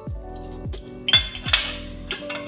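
Metal fork clinking and scraping against a ceramic plate, with a few sharp clinks from about a second in, over soft background music with a steady beat.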